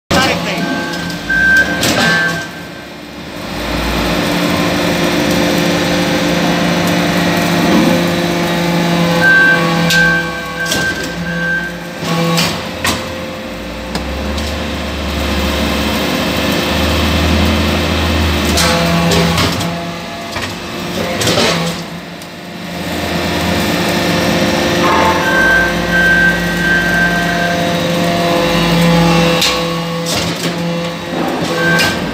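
Hydraulic metal-chip briquetting press running through its pressing cycles: a steady pump and motor hum with deep low surges as the ram presses, and occasional sharp metallic knocks as it moves and pushes out finished briquettes.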